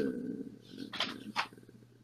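A woman's drawn-out hesitation sound fading out, followed by a couple of faint clicks. Then the call's audio drops out almost entirely for a moment.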